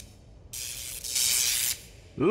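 Cartoon hiss sound effect, like gas or steam escaping under pressure. It starts about half a second in, gets louder for its last half-second, then cuts off just before the end.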